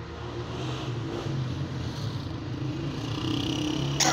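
An engine or motor running steadily: a low hum with a higher tone above it, over a background of noise.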